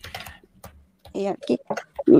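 A few short clicks, like typing on a computer keyboard, then a person's voice saying a few words.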